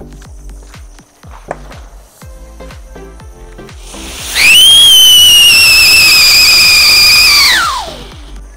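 Siren-type Diwali firecracker: a ground firework that starts a loud, high-pitched whistle about four seconds in. The whistle holds for about three and a half seconds, sinking slightly in pitch, then glides sharply down as it dies out near the end. Background music with a steady beat plays throughout.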